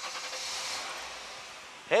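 1994 Ford Taurus V6 engine starting and running, heard from inside the cabin as a steady hiss-like noise that slowly fades.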